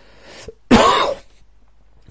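A man takes a short breath in, then clears his throat once with a loud, short cough-like burst about two-thirds of a second in.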